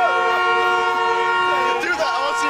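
A two-tone car horn held down in a long steady blast, its two notes sounding together, cutting out briefly near the end before sounding again.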